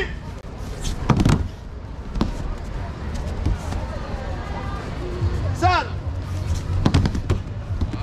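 Judokas landing on judo mats in breakfalls: sharp slaps and thuds about a second in, again at two seconds, and a pair near seven seconds. A short shouted call rises and falls between them, over a steady background of voices.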